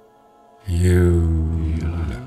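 A deep male voice chanting a long, steady low tone in a mantra-like way. It starts about two-thirds of a second in after a brief pause and is held to the end.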